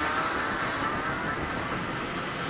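A steady, noise-like electronic wash from a progressive trance track, with faint held high tones and no beat, slowly fading.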